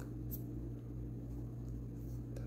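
Faint brief swish of lace thread drawn through the needle lace as a stitch is pulled tight, with a few tiny ticks of handling, over a low steady hum.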